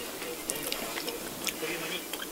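Soft chewing and mouth sounds of someone eating bread-crust gratin, with small scattered clicks over a faint steady hum.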